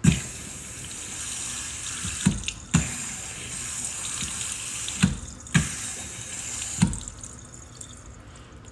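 Kitchen faucet running into a stainless steel sink, the stream pressed against an avocado half held at the spout. Six short dull thumps cut through the water: one right at the start, pairs about half a second apart near 2 and 5 seconds in, and one near the end.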